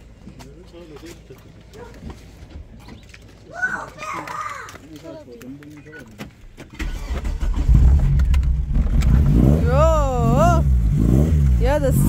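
Volkswagen hatchback's engine starting about seven seconds in and then running loudly and steadily.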